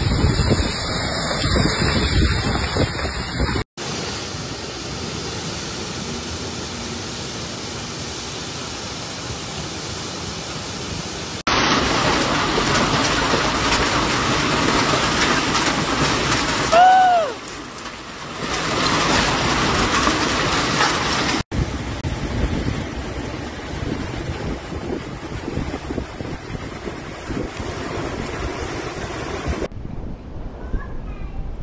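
Storm sound from several spliced phone recordings: heavy rain and gusting wind on the microphone, a continuous noise that changes abruptly at each cut. Just past halfway a short voice-like cry rises and falls over the storm.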